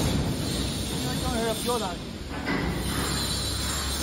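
Steady low machinery hum in a workshop, with a faint voice speaking in the background about a second in.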